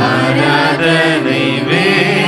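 A man singing a Tamil Christian worship song into a microphone, his voice gliding between notes, over steady held accompaniment chords.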